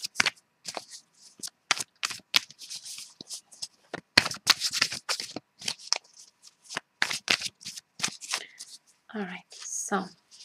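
An Osho Zen Tarot deck being shuffled by hand: a quick, irregular run of card slaps and clicks, densest about four to five seconds in. A brief bit of voice comes near the end.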